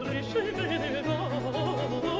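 An alto voice singing a Baroque solo cantata with basso continuo accompaniment: a wavering, ornamented vocal line over steady low bass notes that change about every half second.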